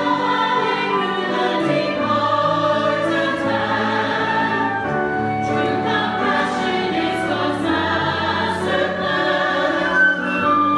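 Mixed-voice church choir singing an anthem in harmony with long held notes, over instrumental accompaniment.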